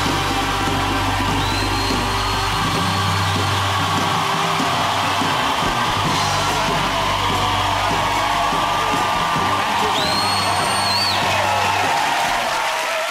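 Upbeat chat-show theme music with a heavy, steady bass beat, with a studio audience cheering and whistling over it. Shrill whistles sound about a second and a half in and again near the ten-second mark.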